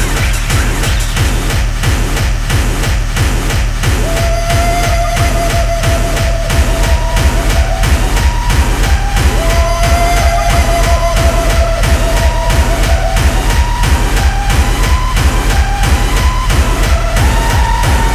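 Techno-style electronic dance music with a steady, fast kick-drum beat. A held synth tone comes in about four seconds in, and a line of higher, shorter synth notes follows later.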